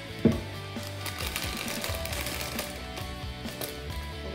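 Frozen kale dropped into a plastic blender jar: a sharp knock about a quarter second in, then a run of light clicks and rattles. Background music plays throughout.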